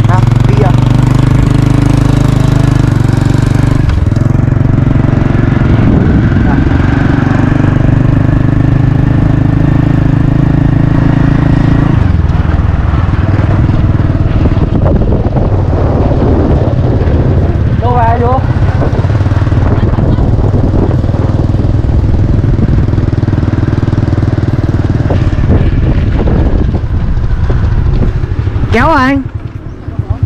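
Motorbike engine running at a steady speed for about the first twelve seconds, then a rougher, noisier rumble for the rest, with brief voices.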